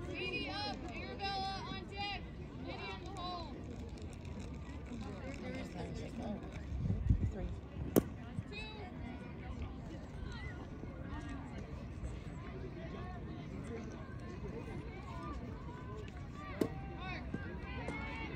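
Background chatter of voices, clearest in the first few seconds, over steady outdoor noise. A brief low rumble comes about seven seconds in, and a single sharp knock about a second later.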